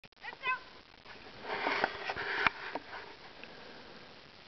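A person says "thank you" with a laugh, then about a second of breathy sniffing with a few sharp clicks, the loudest about two and a half seconds in.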